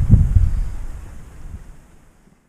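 Wind buffeting the camera microphone, a low rumble that fades steadily away.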